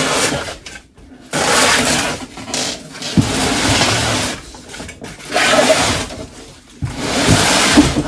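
Cardboard shipping box scraping and rustling as a boxed e-bike is dragged out of it, in several long bursts with short pauses between pulls.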